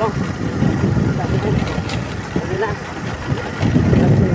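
Motorcycle engine running while riding, with a steady low rumble of wind and road noise on the microphone.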